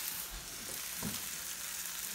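Hot oil sizzling steadily in a skillet as a homemade plant-based burger patty fries.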